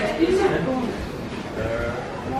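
Indistinct voices of several people talking as they walk, clearest in the first half second and fainter after.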